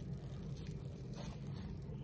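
Plastic wrap crinkling and rustling as fingers gather and twist it around a small pocket of milk, in a few faint scattered crackles over a steady low hum.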